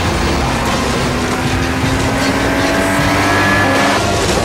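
SUV engine running under acceleration, its tone slowly rising in pitch, over a steady rush of tyre and road noise on a dirt track.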